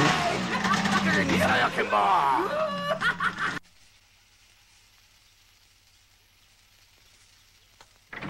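A man's voice laughing and exclaiming over a steady low hum. Both cut off abruptly about three and a half seconds in, leaving near silence.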